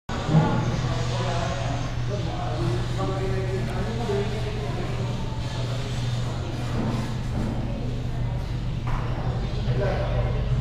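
Indistinct background voices of people talking, with no clear words, over a steady low hum.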